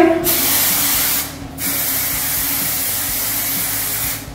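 Aerosol hairspray can spraying in two long hisses. The first lasts about a second, then a short break, and the second runs over two seconds.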